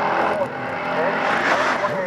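Drag-racing car engine running hard down the strip, its pitch climbing and dropping back again and again.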